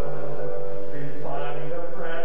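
Slow, sustained vocal music, chant-like hymn singing with long held notes. A new sung phrase comes in a little over a second in.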